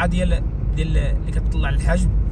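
Steady low rumble of a car driving along the road, with a man talking over it in Moroccan Arabic.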